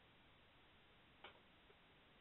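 Near silence: faint line hiss, with one faint click a little over a second in.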